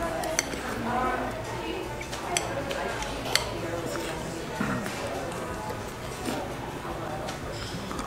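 Metal spoons clinking and scraping against glass sundae bowls, with a few sharp clinks standing out over low background chatter.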